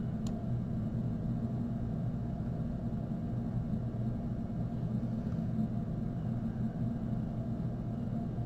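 A steady low background hum, with one faint tap shortly after the start.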